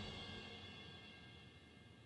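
The fading tail of a single loud musical hit in the soundtrack: a cymbal-like ring dying away slowly toward near silence.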